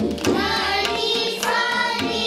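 A group of children singing an Indian classical melody in unison over a steady drone, with a few tabla strokes.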